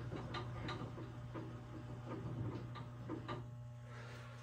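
SawStop PCS table saw's blade-height mechanism being cranked to raise the blade: a few faint, irregular mechanical clicks and ticks over a steady low hum.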